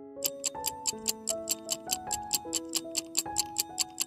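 Quiz countdown-timer sound effect: a clock ticking about four times a second over a gentle melody of held notes.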